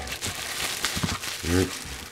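Plastic bubble wrap crinkling and crackling in the hands as a small package is unwrapped, a run of small irregular crackles.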